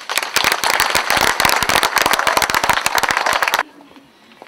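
Audience applauding, a dense run of hand claps that cuts off suddenly near the end.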